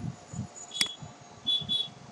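A sharp click with a short high electronic tone about a second in, then two short high beeps in quick succession, over faint low thudding.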